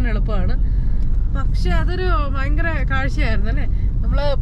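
A woman talking over the steady low rumble of road and engine noise inside a moving car's cabin.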